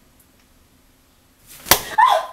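A sudden lunge in a struggle: a quick whoosh that ends in a sharp hit about three-quarters of the way in, after near-quiet room tone. At the very end a short, falling cry starts.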